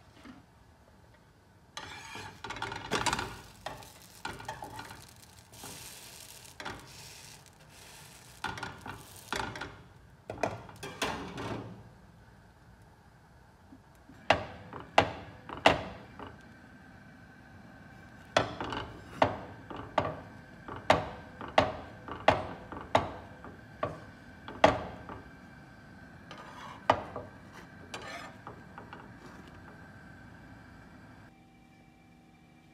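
Metal spatula and glass pan lid clattering and scraping against a frying pan as a flatbread is turned over and covered, then a run of sharp taps, about three every two seconds, as the spatula presses the bread in the pan.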